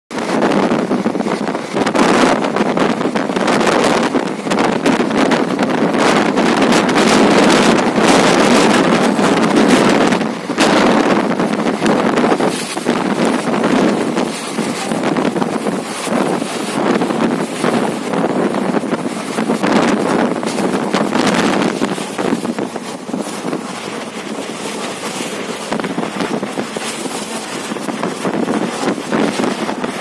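Wind buffeting the microphone at the open window of a moving Indian Railways passenger train, over the train's running noise. It is loud and gusty for most of the time and eases a little after about twenty seconds.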